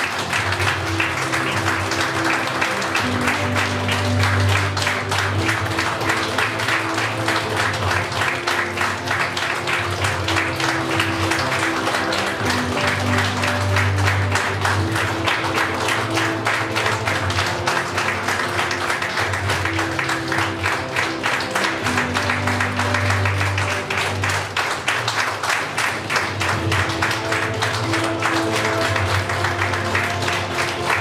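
A roomful of people clapping steadily together, with music playing underneath: a bass line and held notes.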